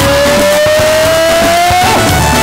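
Loud band music with a steady low rhythm, over which a lead line holds one long note that slides slowly upward in pitch and ends with a brief wobble near the end.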